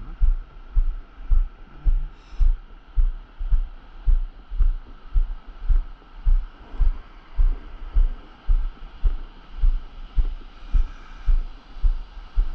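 Low, regular thumps a little under twice a second: the surfer's walking steps jolting a camera mounted under a carried longboard, over a steady faint hiss of surf.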